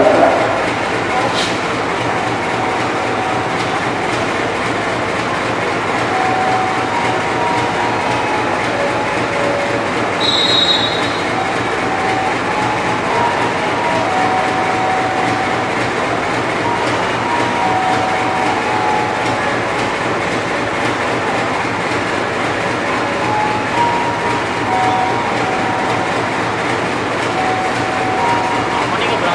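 GE U18C (CC 201) diesel-electric locomotive idling at a standstill, its V8 diesel engine running with a steady low drone.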